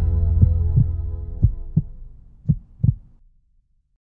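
Cinematic logo-sting sound design: a low sustained drone chord fading out, with three heartbeat-like double thumps about a second apart. The drone dies away about three and a half seconds in.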